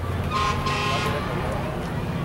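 A vehicle horn gives one toot of about a second, shortly after the start, over a steady low engine rumble.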